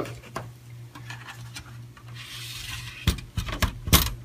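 Handling sounds: a soft rub about two seconds in, then two sharp knocks near the end.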